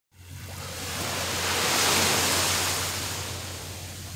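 Small ocean wave breaking and washing up the sand, the rush swelling to its loudest about halfway through and then fading.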